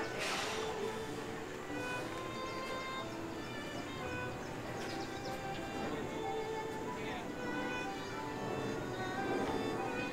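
Park background music with a fiddle, playing through an outdoor loudspeaker, with faint crowd voices beneath it. A brief rushing noise comes just after the start.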